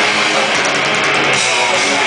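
Live punk rock band playing at full volume: distorted electric guitars, bass and a drum kit in a dense, steady wall of sound, heard from the audience.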